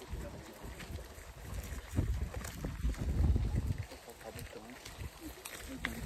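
Low rumble on a phone's microphone while walking outdoors, loudest from about two to four seconds in, with faint voices talking in the background and a few light clicks.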